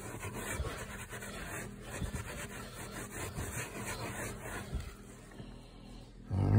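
A towel rubbing and scrubbing at carpet pile, an irregular scratchy rustle that fades out in the last second or so.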